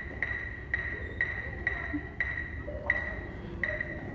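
Electronic metronome beeping about twice a second, a short high beep at a steady pitch, heard across a large hall.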